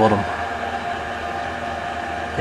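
Steady electrical hum from an energised three-phase kWh meter and its mains test setup: a low mains hum with fainter higher whining tones on top, unchanging throughout.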